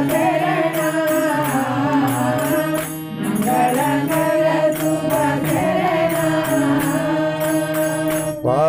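Telugu devotional bhajan music: a wavering melody over a low sustained drone, with jingling hand percussion keeping a steady beat of a few strokes a second.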